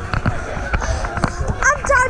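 Repeated dull thuds of jumping on trampoline beds, mixed with the chatter of people's voices, one voice standing out in the second second.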